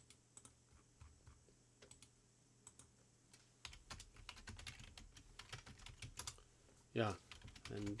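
Soft computer keyboard keystrokes and mouse clicks, scattered at first and coming thick and fast for a few seconds about halfway through while a command is typed.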